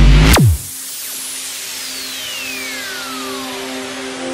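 Electronic dance-style background music. A loud beat cuts off about half a second in with a steep downward pitch drop. A quieter stretch of sustained tones follows, with a slow falling sweep underneath.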